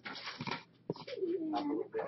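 A cat meowing once: a low, drawn-out call that dips and rises, starting about a second in, after a brief rustle and clicks.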